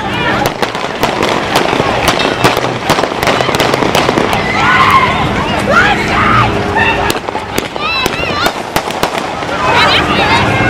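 Dozens of gunshots in quick, irregular succession, several a second at times, with people shouting and screaming as they run from the gunfire.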